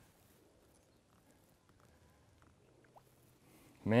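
Near silence with a few faint ticks, then a man's short exclamation just at the end.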